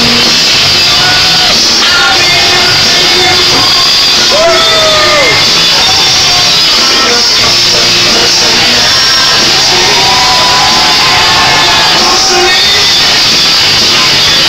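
Loud rock entrance music playing over a PA in a large hall, with the crowd shouting over it.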